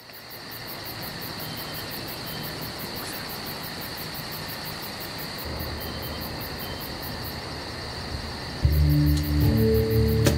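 Night-time insect chorus of crickets or katydids: a steady high trill with fast, even pulsing above it. Near the end, music with deep bass notes comes in louder than the insects.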